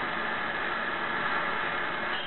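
A steady hiss of background noise from an old off-air television recording, with no voice or music over it.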